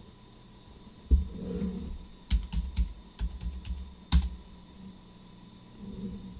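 Typing on a computer keyboard: a quick run of keystrokes from about one second in, ending with one hard stroke a little after four seconds, as a password is entered.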